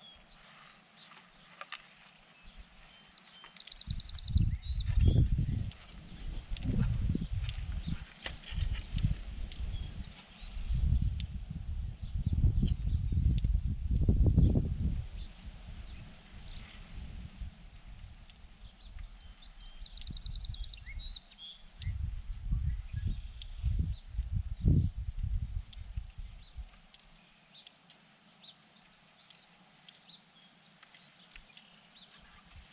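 Wind buffeting the microphone in gusting low rumbles, in two long spells, with a short high trill twice, a few seconds in and again about twenty seconds in.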